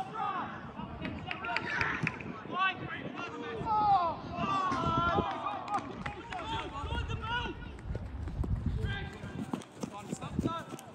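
Men shouting and calling to each other across a football pitch during play, loudest about halfway through. Low thuds of players' running footsteps on grass come through in the second half.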